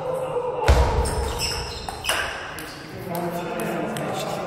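Table tennis hall: a man's voice rings out with a heavy low thud about two-thirds of a second in, then men's voices from about three seconds, with light clicks of a ping-pong ball bouncing throughout.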